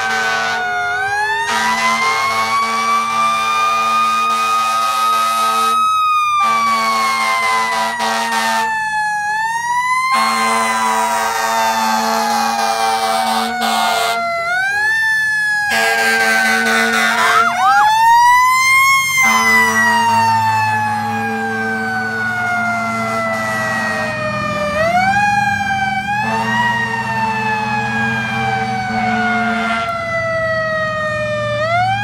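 Fire engine sirens wailing as the trucks drive past. Each wail rises quickly, then falls slowly over several seconds, repeating all through. In the second half a low engine rumble comes in under them.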